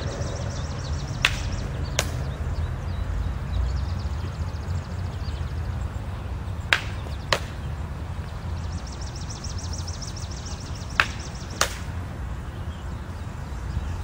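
Basket-hilted broadswords striking each other in sword drills: three pairs of sharp clacks, the two blows of each pair about two-thirds of a second apart, over a steady low rumble.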